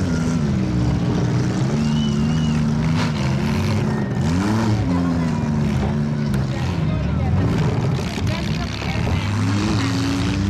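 Several compact demolition-derby cars' engines revving and running hard, their pitch repeatedly climbing and dropping as the drivers accelerate and back off.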